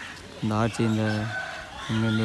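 A rooster crowing: a short note, then a long held note, with another call starting near the end.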